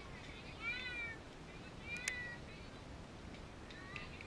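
Distant high-pitched calls from voices across a softball field: one rising-and-falling call about half a second in, then a sharp crack at about two seconds followed by a short call.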